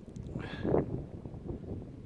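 Wind buffeting the microphone as a low, uneven rumble, with one brief breathy vocal sound about half a second in.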